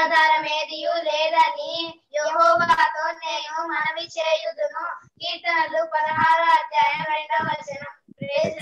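Two children singing together over a video call, in phrases broken by short pauses about two and five seconds in.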